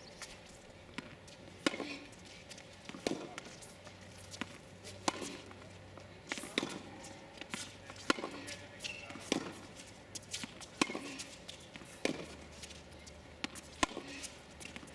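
Baseline tennis rally on a hard court: tennis balls struck by rackets and bouncing on the court surface, a sharp knock roughly every one to one and a half seconds, some loud and some fainter.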